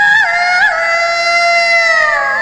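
Indian film song: a female voice holds one long high note with quick small ornamental turns, the pitch sliding slowly down in the second half, over musical accompaniment.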